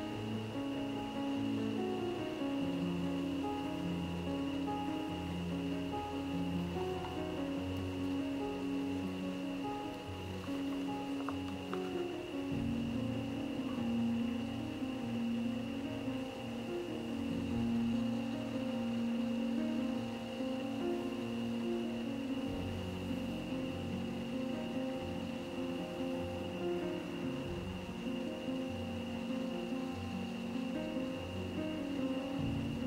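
Background music: a solo acoustic guitar playing a gentle melody.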